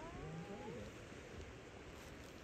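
Steady rushing wind noise on the microphone on an exposed clifftop. A faint voice trails off in the first second.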